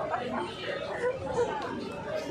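Voices of several people chattering, with no clear words.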